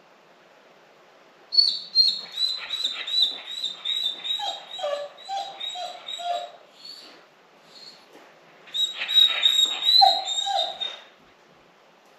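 A dog left alone in the house whining and whimpering in quick, high-pitched repeated cries, about three a second, in two runs of several seconds with a short pause between: distress at being left alone.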